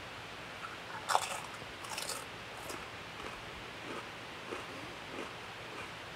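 Paqui One Chip Challenge tortilla chip being bitten and chewed. A sharp crunch comes about a second in, a few more follow near two seconds, and then quieter chewing runs on.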